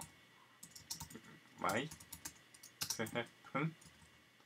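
Typing on a computer keyboard: quick, irregular key clicks.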